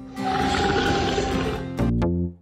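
A person's growl imitating a wolf, rough and lasting about a second and a half, over a children's song's music backing, which comes back with a chord near the end.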